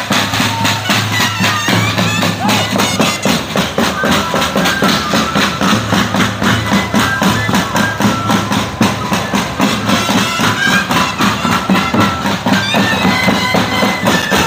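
Andean moseñada music from a troupe of moseño flutes, playing a held, reedy melody in many parallel voices over a low drone, with drums keeping a steady beat.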